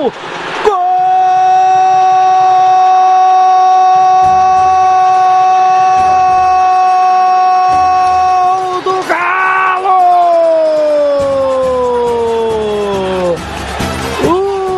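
Football commentator's goal cry: one long shout held on a single high note for about eight seconds, then after a brief break a second shout that falls steadily in pitch.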